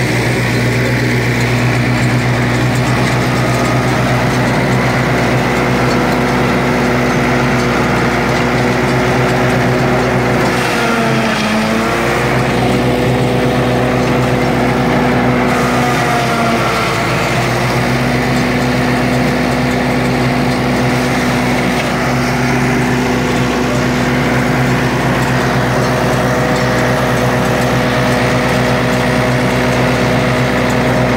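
Ford 6610 tractor's diesel engine running steadily while driving a PTO forage chopper that is being hand-fed maize stalks. The engine pitch sags briefly and recovers twice, around eleven and sixteen seconds in, as the chopper takes load.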